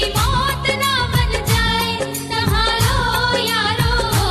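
Bollywood-style Hindi patriotic song: a wavering, ornamented vocal line over a steady drum beat of about two strokes a second.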